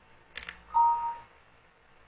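A short click, then an electronic beep lasting about half a second, two steady pitches sounding together.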